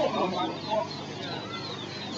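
Birds calling: a run of short, high chirps repeating throughout, with louder, lower sounds in the first second.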